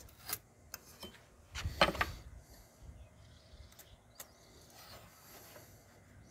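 Faint handling sounds of marking out a cut on a pine board: a few light clicks as a metal speed square is set and shifted against the board, and soft scraping of a pencil drawing a line.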